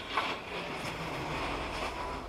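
Steady road and engine noise heard inside a moving car's cabin, with a heavy articulated truck passing close in the oncoming lane.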